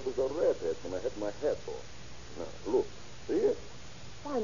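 Speech only: a voice talking, as dialogue in an old radio drama recording, with a faint steady hum underneath.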